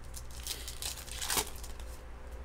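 Foil trading-card pack wrapper crinkling and tearing in the hands, in a few quick crackly bursts over about a second, the loudest near the end.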